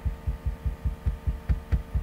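A rapid, even series of short, low, dull thumps, about five a second.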